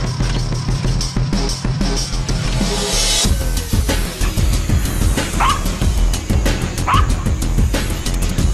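Background music throughout. Over it, in the second half, come two short yelping calls that rise and fall in pitch, from black-backed jackals calling at a leopard.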